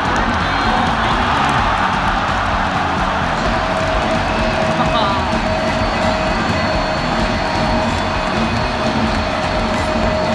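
Stadium crowd cheering and shouting for a home run, with music playing underneath. A steady held tone joins about three and a half seconds in.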